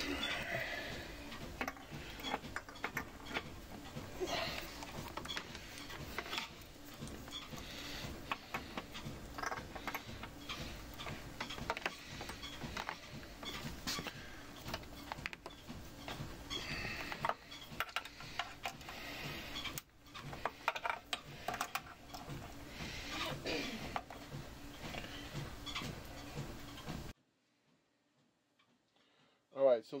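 Hands handling cables and pushing RCA plugs and speaker wires into an amplifier's rear jacks and binding posts: scattered clicks, taps and rustles over a steady hiss, cutting off abruptly near the end.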